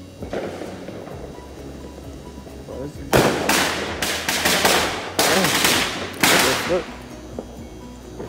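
Fireworks going off: a quick string of loud bangs and cracks starting about three seconds in and lasting some four seconds, in several bursts.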